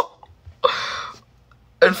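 A person's short, breathy, voiceless exhale of about half a second, a reaction of shock or amusement, followed near the end by the start of speech.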